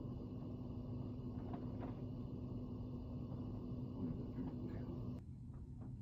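Steady hum and whir of an electric fan running, with a few faint ticks. The sound drops away abruptly about five seconds in.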